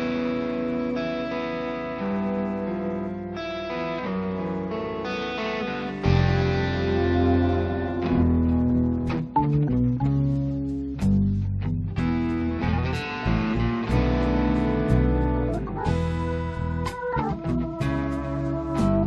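Live electric blues band playing a song's instrumental intro: electric guitar over sustained chords, with bass and drums coming in about six seconds in.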